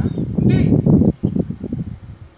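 Wind buffeting the microphone outdoors, a loud, uneven low rumble, with a brief shouted voice about half a second in.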